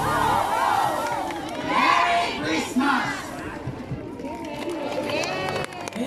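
A crowd shouting and cheering, many voices at once. Music cuts off just after the start.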